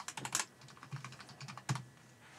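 Typing on a computer keyboard: a quick run of key clicks in the first half-second, then a few scattered clicks, the loudest near the end.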